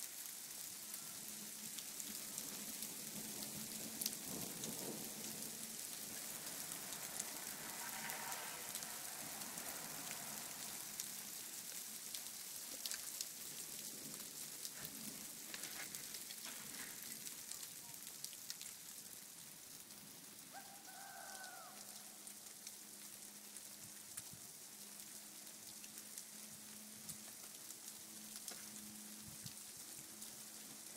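Freezing rain and pea-sized hail falling in a thunderstorm, heard as a steady fine hiss with many small ticks.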